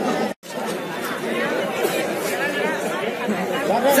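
Several people talking at once in an indistinct babble of overlapping voices. The sound cuts out completely for a split second just after the start, then the chatter goes on.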